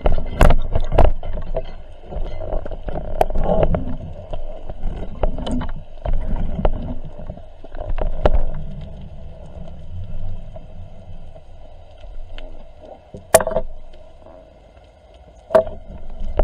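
Underwater sound through a speargun-mounted camera's housing: water rushing and rumbling with the diver's swimming movements, and sharp clicks and knocks, the loudest about 13 seconds in and again near the end.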